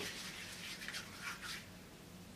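Faint rubbing of hands, palms and fingers against each other, a few soft scratchy strokes that stop about a second and a half in.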